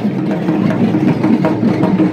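Many dhaks, the large Bengali barrel drums beaten with thin sticks, being played at once, making a dense, continuous drumming with no break.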